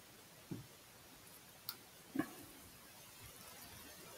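A quiet room with faint handling of a small battery-powered signal generator box. There is one sharp little click a little under two seconds in, with a couple of soft brief sounds around it.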